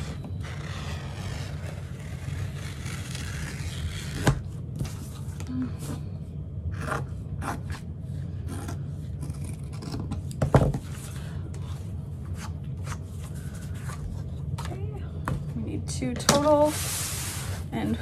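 Scissors cutting waterproof canvas: repeated snips with the blades scraping along the fabric, over a steady low hum. Near the end a louder rustle as the cut fabric is slid across the cutting mat.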